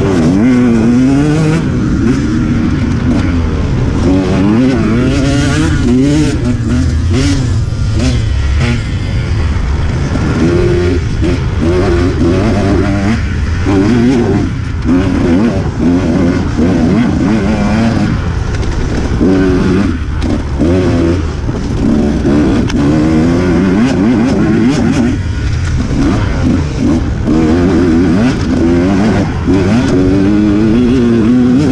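Dirt bike engine heard from the bike itself during a harescramble race, its pitch repeatedly rising and falling as the rider works the throttle. Knocks and rattles from the rough trail run through it, with wind noise on the microphone.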